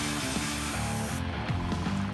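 Airbrush spraying with a steady hiss that stops a little over a second in, under background music with stepping melodic notes.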